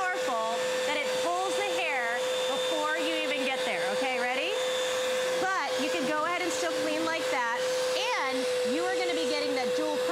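Bissell Powerglide Lift-Off Pet Vacuum running, its pet tool drawn across fabric upholstery. The dual motor gives a steady whine.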